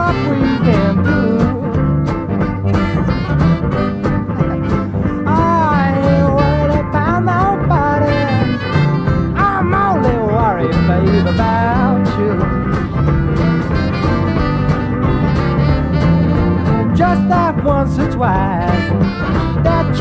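Live electric blues band playing an instrumental break: a harmonica plays a lead line full of bent, sliding notes over guitar and bass backing.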